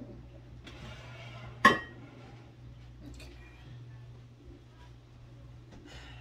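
Ceramic dishes being moved about on a wooden countertop: soft shuffling, then one sharp clink about two seconds in as a piece is set down, followed by a few faint taps.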